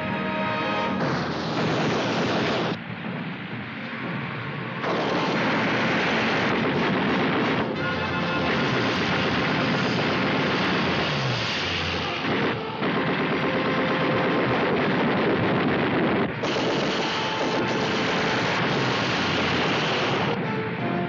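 Film battle soundtrack: orchestral music with loud stretches of propeller aircraft engine noise and anti-aircraft gunfire and explosions. These cut in and out sharply with the shots, about a second in, near five seconds, and again towards the end.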